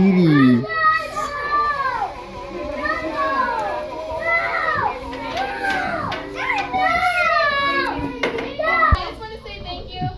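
Several young children's high voices overlapping in calls and chatter in a classroom, with music playing quietly underneath. A short thump near the end.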